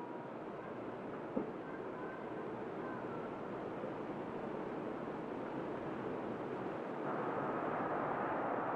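Steady city street traffic noise, growing louder near the end as a car drives past close by, with a single brief knock about a second and a half in.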